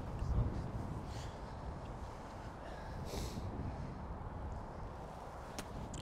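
A golf club striking the ball on a short chip shot, a single short click near the end, over faint low outdoor rumble.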